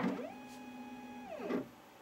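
Stepper motors of a CNC4Newbie Ultimate Kit CNC machine whining as the gantry travels back to its zero position. The pitch rises as the move starts, holds steady for about a second, then falls and stops about one and a half seconds in.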